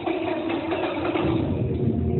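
An engine-like rumble, deepening and growing about a second in, over steady tones carried on from the music before it.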